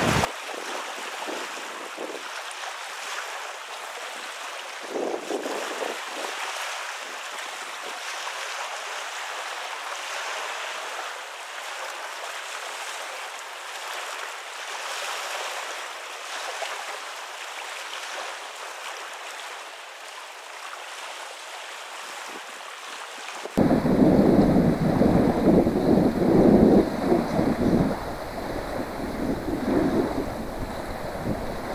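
Small wind-driven waves washing on a gravel shore, a steady hiss. About three-quarters of the way through, it switches suddenly to louder wind buffeting the microphone, with a gusty low rumble.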